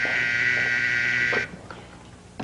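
Office desk intercom buzzer giving one steady, harsh buzz that cuts off about one and a half seconds in: a call through from the inner office.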